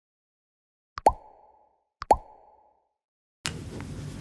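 Two identical cartoon "plop" sound effects about a second apart, each a sharp click followed by a short pitched bloop that fades quickly. About three and a half seconds in, steady low room noise begins.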